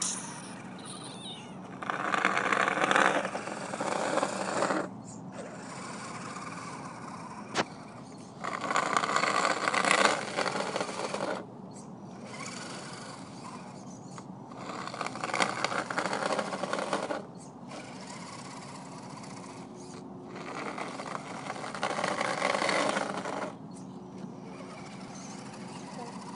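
Electric motor and gearbox of a radio-controlled RC4WD Trailfinder 2 scale truck whining in four bursts of about three seconds each as it is driven plowing, with a steadier low hum between the bursts.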